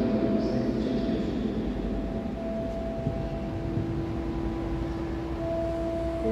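Pipe organ holding soft sustained chords over a low bass note, with the chord changing about two and a half seconds in and again near the end: an instrumental interlude between sung verses of a hymn.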